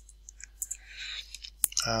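A few faint clicks, then one sharp click about one and a half seconds in, from computer input as a spreadsheet formula is entered.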